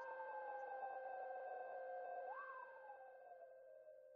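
Electronic synthesizer outro sting fading out: steady high and low tones held under a gliding tone that slides down, swoops up once about halfway through, and slides down again.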